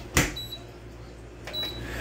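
Danby DDW621WDB countertop dishwasher door pushed shut with a single thud just after the start. Two short high beeps from its control panel follow, a little over a second apart, over a low steady hum.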